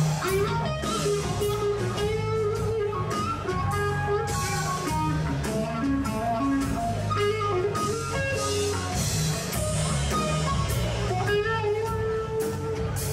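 Electric guitar played live through an amplifier: a lead melody of sliding, bending notes over a steady bass line and percussion.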